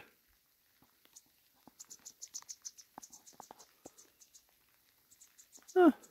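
Small bird in a spruce tree giving a rapid series of thin, high chirps, about six a second, in two runs, the second starting about five seconds in.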